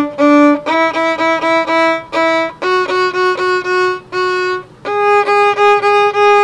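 Violin played on the D string in short separate bow strokes, several on each note, climbing step by step: open D, then E, F sharp and G sharp. The G sharp is taken with a high third finger pushed up against the fourth, so the half step falls between third and fourth finger.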